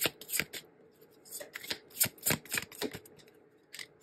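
Tarot card deck being shuffled by hand: an irregular run of quick card slaps and flicks, pausing briefly about a second in and again near the end.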